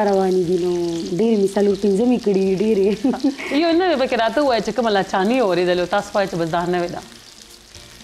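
A woman talking in Pashto over a faint steady hiss; her voice stops about seven seconds in.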